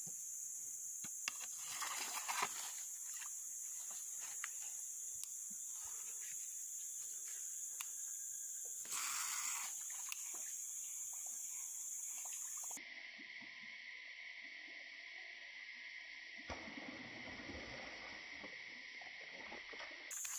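Steady, high-pitched drone of tropical forest insects. About 13 seconds in it switches abruptly to a lower-pitched insect drone, with scattered faint clicks throughout and a low rumbling noise joining near the end.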